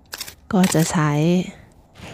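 A woman speaking Thai, with a few short scratchy clicks just before, as a Korean hand hoe (homi) scrapes into dry sandy soil.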